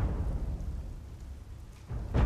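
Deep boom sound-effect stingers of the kind used in TV drama: one hits at the start and rumbles away, and a second hits just before the end.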